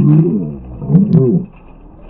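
A human voice slowed down and dropped in pitch, so that it sounds deep and drawn out, like a roar. Two such sounds come, one at the start and a second about a second in.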